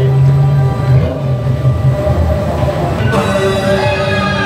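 Theme-park ride car rumbling along its track, with music playing over it. About three seconds in, a brighter, fuller passage of music comes in as the car enters the dark show building.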